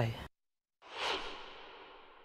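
Broadcast transition whoosh sound effect: a noisy swish that swells up about a second in and fades away slowly, growing duller as it dies.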